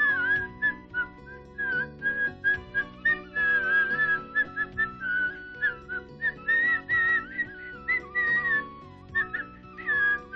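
Background music: a high, ornamented lead melody in phrases of many short notes over steady, held lower accompaniment notes.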